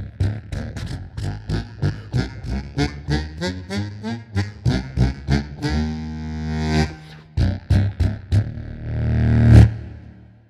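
Custom Hohner Bass 78 double-deck bass harmonica, its reeds lowered to reach contra C (C1), playing a fast staccato bass line in its lowest octave. A note is held about six seconds in, and a final swelling low note, the loudest of the passage, stops just before the end.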